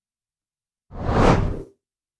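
A single whoosh sound effect for an animated news-graphics transition, swelling up and fading away in under a second about halfway through.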